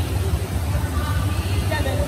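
Indoor swimming pool hall ambience: a steady low rumble with faint voices in the background.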